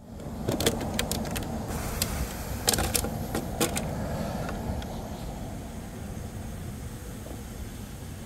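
Hands handling an RC hydroplane with its hatch open: a string of sharp clicks and clacks in the first few seconds, over a steady low outdoor rumble.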